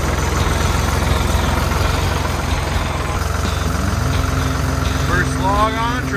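Ford 340A tractor engine running, its pitch rising a few seconds in and then holding steady at a higher speed.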